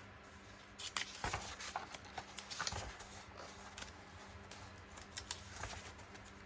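Sheets of printed paper being flipped through and lifted by hand: a string of irregular short papery rustles and taps.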